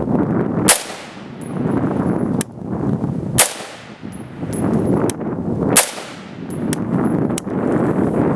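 Three rifle shots from an AR-15-type rifle fitted with a 2-inch Ghost flash hider/compensator prototype, fired about two and a half seconds apart, each a sharp crack with a short ringing tail.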